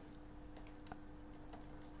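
Faint typing on a computer keyboard: a few light, scattered keystroke clicks.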